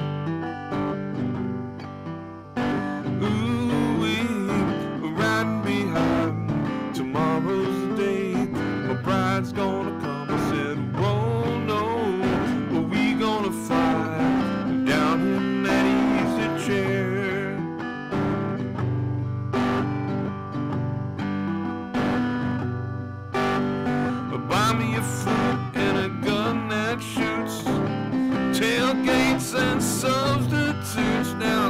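Acoustic guitar strummed steadily while a man sings along.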